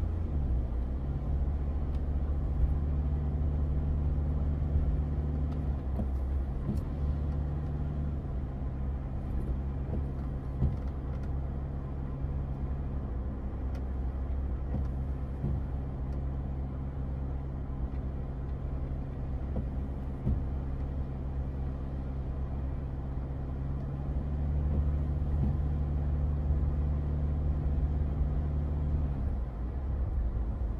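Car engine and road noise heard from inside the cabin while driving: a steady low drone whose pitch steps up and down a few times.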